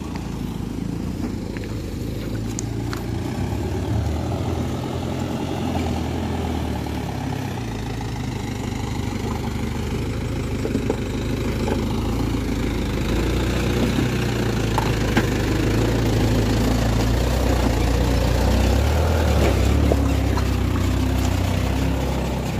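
Mitsubishi Fuso minibus's diesel engine running at low speed on a rocky track, growing steadily louder as it approaches, with a few sharp clicks along the way.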